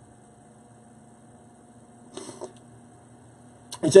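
Room tone in a pause in speech: a steady low electrical hum with a faint high whine above it, and a brief soft sound about two seconds in.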